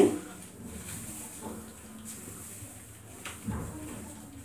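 Faint, soft rustling of a hairbrush drawn through a long lock of hair coated in henna gel, a few irregular strokes.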